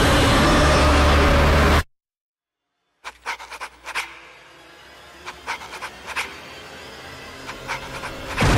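A loud, dense creature roar over booming trailer sound cuts off abruptly just under two seconds in. After about a second of dead silence, a quieter stretch follows with short, sharp breathy pants or grunts in small clusters of three or four.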